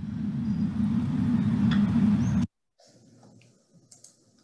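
A loud, low rumbling noise from a screen-shared video's audio as playback starts, cutting off suddenly after about two and a half seconds: a glitch in the shared sound. Faint room sound follows.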